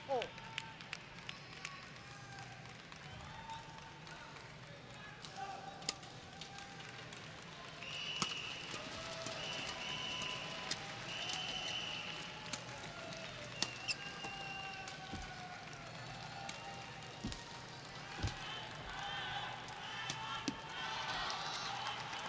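A badminton rally: sharp cracks of racket strings hitting the shuttlecock, interspersed with squeaks of court shoes on the synthetic court mat, over a murmuring arena crowd. The crowd's voices swell near the end as the rally finishes.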